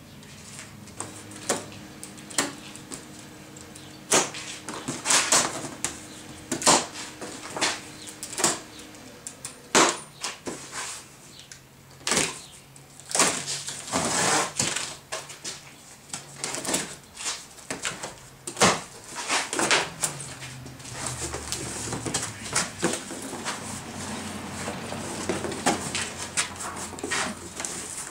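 A large cardboard shipping box being opened: plastic packing straps cut, the taped top seam slit and the cardboard flaps pulled open and folded back, giving a run of irregular sharp snaps, scrapes and rustles.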